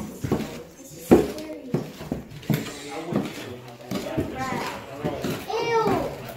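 Children's voices chattering, with boot footsteps knocking on bare wooden stairs, the loudest knock about a second in.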